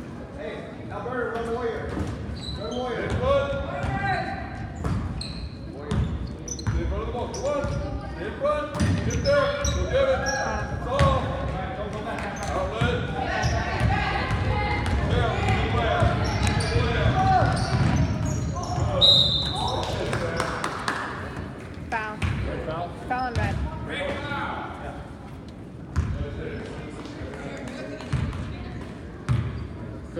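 Basketball being dribbled on a hardwood gym floor amid players' and spectators' shouts and chatter, echoing in the hall. A brief high whistle blast sounds about two-thirds of the way through.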